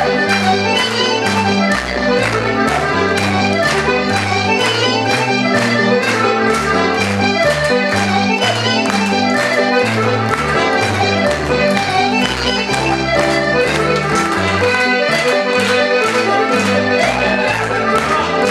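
Live Irish traditional dance music for set dancing, with accordion and fiddle carrying the tune over a moving bass line and a steady, even beat.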